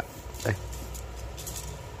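Steady low background hum of room noise, with one short spoken word about half a second in.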